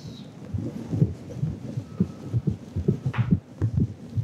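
Marker knocking and scraping on a whiteboard as figures are written: irregular soft low knocks, several a second, with a brief higher scrape about three seconds in.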